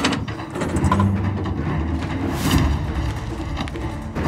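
Low, steady rumbling drone of a tense drama underscore, with a sharp click right at the start and a brief rustling swish about two and a half seconds in as a paper envelope is handled at an open floor safe.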